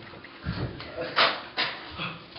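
A few short, wordless bursts of voice, with a low thump about half a second in.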